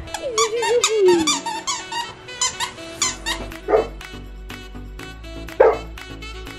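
Golden retriever chewing a squeaky plush toy: a quick run of high, wavering squeaks over the first three seconds, then two louder, lower squeals, over background music.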